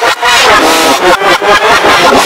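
Loud, heavily distorted audio played backwards: a voice-like sound whose pitch wobbles and breaks every fraction of a second, layered with harsh noise.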